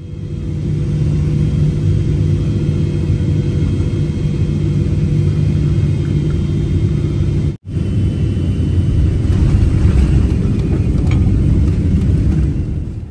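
Jet airliner cabin noise during final approach: a loud, steady roar of engines and rushing air with a low hum. It breaks off for an instant about two-thirds of the way through, then resumes.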